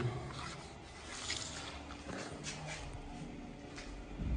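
Faint rubbing and rustling handling noise, with a few soft scrapes about a second apart.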